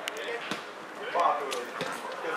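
Football kicked several times: a few sharp thuds of boot on ball, mixed with players' shouts on the pitch.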